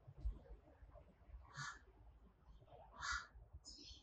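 A crow cawing faintly, two short harsh caws about a second and a half apart.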